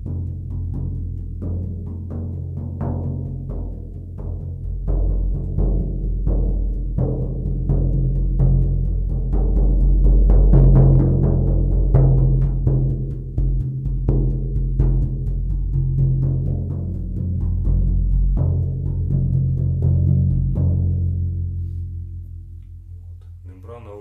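Large oval shamanic frame drum with a plastic membrane, struck repeatedly about twice a second, giving a very low, bassy boom like rolling thunder. The beat swells louder toward the middle and dies away near the end, leaving the skin ringing.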